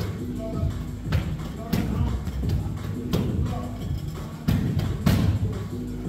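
Music playing with a voice in it, over a series of irregular thuds, about one a second, from training in the gym.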